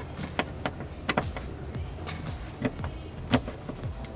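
Scattered sharp clicks and knocks of a screwdriver working at a plastic cap on a car's fuel-pump access cover, plastic and metal tapping and snapping as the cap is pried loose.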